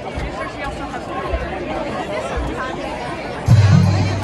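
Spectators chattering, then about three and a half seconds in a marching band comes in suddenly and loudly with a sustained low chord.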